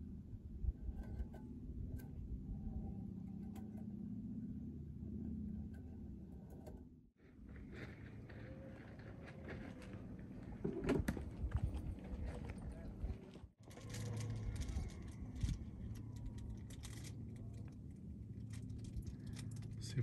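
Outdoor ambience with a steady low rumble of wind on the microphone and scattered light clicks and clinks, broken twice by abrupt cuts.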